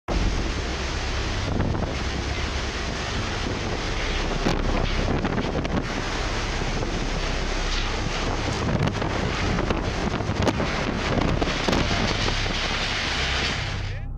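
Storm wind from a tropical cyclone, gusting hard and buffeting the microphone with a dense, steady rush, with driving rain.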